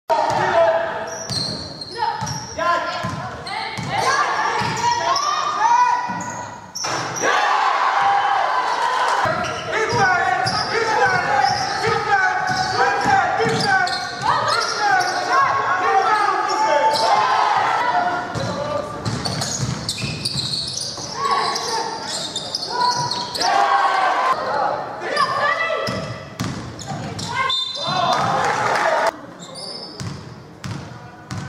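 A basketball being dribbled and bouncing on a gym court, with players' and coaches' voices calling out across the game, echoing in a large hall.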